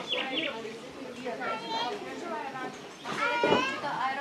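Several people talking, with a louder, high-pitched voice about three seconds in.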